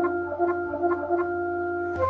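Instrumental passage of a keyboard-made song: a steady held chord with no vocals, and a few faint soft ticks.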